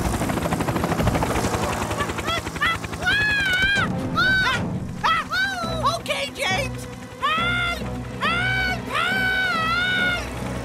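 Cartoon helicopter rotor chopping for the first two seconds or so. Then a run of high-pitched cries, each rising and falling, plays over background music.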